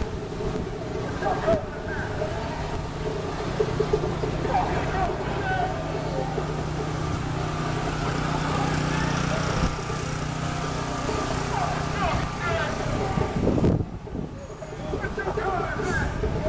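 City street traffic: engines of vans, taxis and cars running and passing close by, with a steady engine drone through the middle, and scattered voices of people around. A short louder rush comes about three-quarters of the way through.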